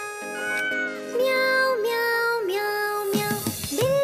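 Cat meows, a few drawn-out calls that rise, hold and fall, over the instrumental music of a children's song.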